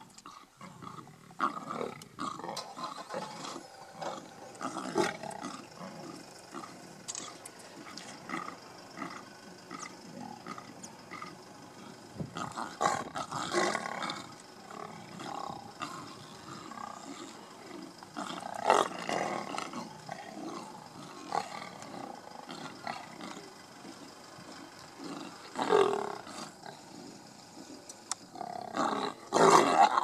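Lions growling over a buffalo carcass as they squabble while feeding, in irregular outbursts, the loudest about halfway through and again near the end.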